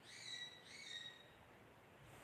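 Faint bird calls: two short, clear whistled calls in quick succession, each about half a second long and falling slightly at the end.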